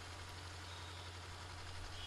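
A faint, steady low hum with a light hiss of background noise.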